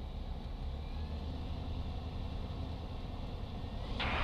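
Light aircraft's propeller engine idling, heard from inside the cockpit as a steady low rumble.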